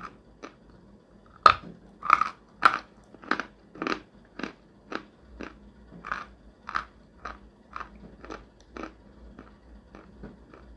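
Chewing a bite of dry Belaya Gora (White Mountain) edible white clay: a steady run of crisp crunches, somewhat under two a second, loudest about a second and a half in and growing fainter as the bite is ground down.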